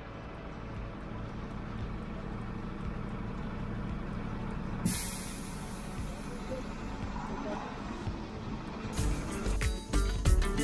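Street traffic: vehicle engines running with a steady low rumble, and a sharp hiss of released air about five seconds in, typical of a heavy vehicle's air brake. Music with a beat comes in near the end.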